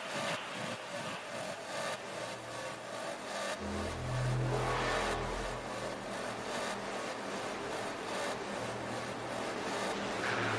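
Breakdown in a hard techno mix: the kick drum drops out, leaving a sweeping noise wash, with a low synth note swelling in about four seconds in and fading a couple of seconds later.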